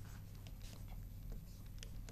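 Faint handwriting with a stylus on the screen of an interactive touch display: light scratching and a few small clicks as the pen tip strikes and lifts, over a steady low hum.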